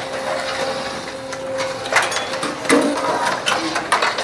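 Long metal ladles and sticks scraping and knocking against large metal cooking pots as several people stir, an irregular clatter over a steady background noise.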